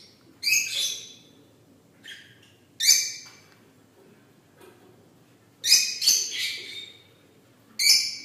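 Albino cockatiels calling: about five short, shrill calls a second or two apart, the longest one near the end.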